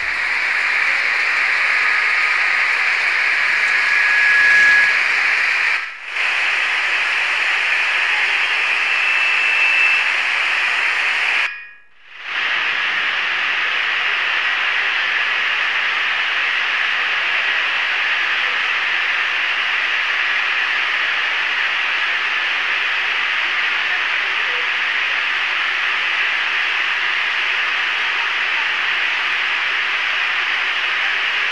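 Heavy rain pouring down, a steady hiss. It drops out briefly about six seconds in and again about twelve seconds in.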